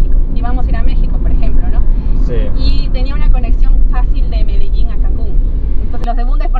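Steady low rumble of a car in motion, heard from inside the cabin beneath a woman's conversation.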